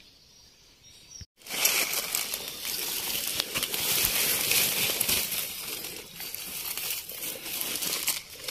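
Dry grass and fallen leaves rustling and crackling close to the microphone as they are disturbed on the forest floor. The rustling starts suddenly about a second and a half in, after a short near-quiet stretch.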